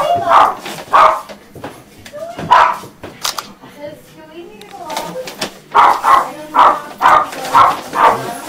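Hearty laughter in rhythmic ha-ha bursts, about three a second. It fades to softer sounds in the middle and breaks out again strongly near the end.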